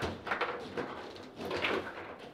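Foosball table in play: rods sliding and clacking, and plastic figures knocking the ball, in a run of irregular sharp knocks with a louder cluster about one and a half seconds in.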